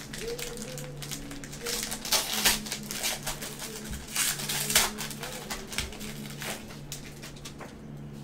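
Foil wrapper of a trading-card pack crinkling and tearing as gloved hands open it, in irregular bursts of crackle that are loudest in the middle. A low steady hum sits underneath.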